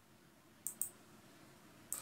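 Near silence, broken by two pairs of faint, sharp clicks, the first pair just under a second in and the second near the end.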